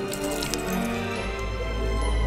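Orchestral film underscore played on sampled virtual instruments, with held notes. A deep bass note comes in a little over a second in and holds.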